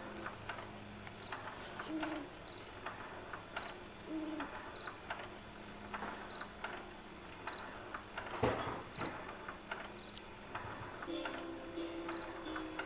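Baby swing's built-in sound unit playing a recorded cricket chorus, short high chirps repeating evenly, with a few soft low melody notes and faint ticks from the swinging seat. A single louder knock about eight and a half seconds in.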